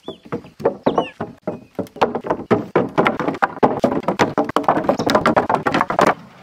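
Split wooden fence posts clunking and knocking against one another as they are unloaded from a pickup bed and thrown onto a stack, in a fast, dense run of knocks that grows busier toward the end.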